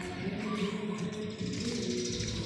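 Background music: a steady melody with held notes.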